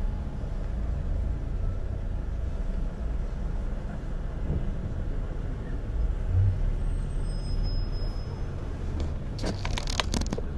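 Steady low rumble of a car's engine and tyres heard from inside the cabin while driving in city traffic, with a few sharp clicks near the end.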